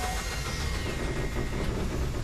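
Loud engine-like rumbling roar, a broadcast sound effect under an animated sponsor graphic. It starts abruptly and cuts off suddenly.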